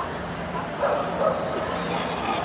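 Shetland sheepdog barking in two short bursts about a second in while playing tug with its handler.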